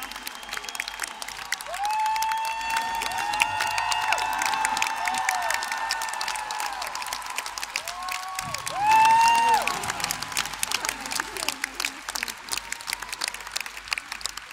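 A concert audience applauding, with clapping throughout and cheering cries rising and falling over it. The loudest cry comes about nine seconds in.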